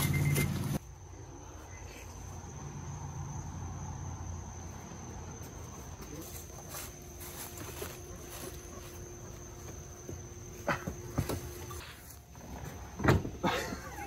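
Outdoor ambience with a steady high-pitched insect drone, and a few sharp knocks near the end.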